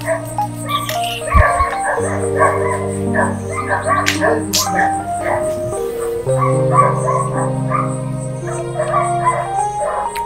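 Film background music with sustained chords shifting every second or two, and short melodic notes over them; a dog barks now and then.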